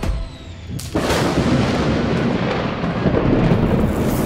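Thunder-and-lightning sound effect: a sudden crash about a second in that goes on as a loud, sustained rumble.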